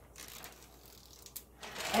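Plastic zip-top bag being pressed shut: faint scattered clicks of the zipper seal and rustling plastic, with a sharper click near the end.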